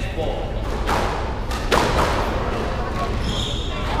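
A few sharp knocks of a squash ball bouncing in an echoing squash court, over indistinct background chatter.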